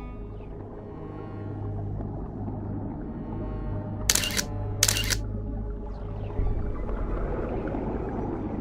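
Two camera shutter clicks about two-thirds of a second apart, roughly four seconds in, over low, sustained background music.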